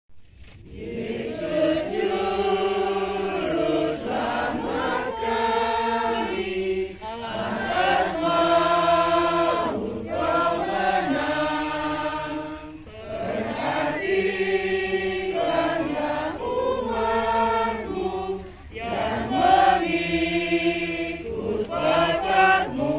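A congregation singing a hymn together, in held phrases of a few seconds with short breaks between them.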